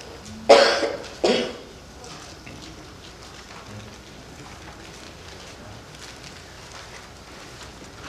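A man coughing twice, close into a handheld microphone: a loud cough about half a second in and a shorter one just over a second in.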